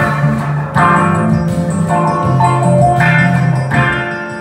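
Live electric guitar and keyboards playing sustained chords over a low bass line, with a last chord struck near the end.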